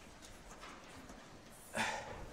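Chalk writing on a blackboard: faint taps and strokes, then a louder, short scrape near the end as the heading is underlined.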